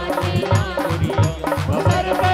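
Live Indian devotional folk music of the languriya kind, amplified through a PA: a fast, steady drum beat under a melody line that bends up and down.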